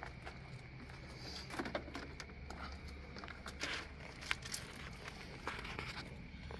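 Faint crunches and clicks of footsteps on gravel and of the stick light being handled and set down on the ground, over a low steady hum.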